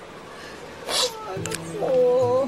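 A woman crying: short wavering sobs with a sharp sniff about a second in, and a rising wail near the end. Soft music with held notes comes in partway through.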